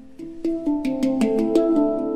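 Handpan (hang) played with the hands: a quick run of struck notes that ring on and overlap into sustained, bell-like tones, growing louder from about half a second in.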